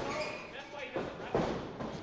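Dull thuds of a wrestler's feet on the wrestling ring's canvas as he runs across the ring to the ropes, with faint crowd voices behind.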